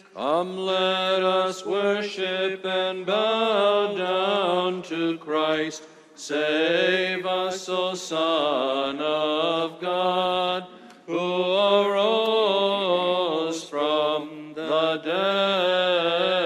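Byzantine chant: a cantor sings an ornamented, melismatic hymn over a steady low held drone (the ison). The phrases break briefly about six and eleven seconds in.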